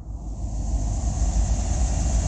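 Freight train rumbling across a railroad bridge: a loud, heavy low rumble with a steady high hiss, fading in and growing louder over about the first second.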